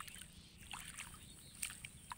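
Faint splashes and sloshing of shallow paddy water as weeds are pulled by hand from the mud of a flooded rice field, with a few short splashes about halfway through and again near the end.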